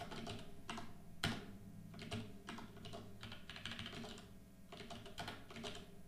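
Typing on a computer keyboard: irregular runs of keystrokes, with one sharper key strike about a second in.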